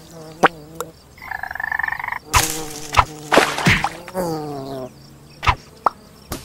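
Cartoon sound effects for a frog and a fly: an insect buzz lasting about a second, and frog croaking broken by several sharp snaps and whacks. Past the middle, one croak falls in pitch.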